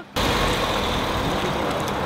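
Steady rushing noise of a car running close by, starting abruptly just after the start.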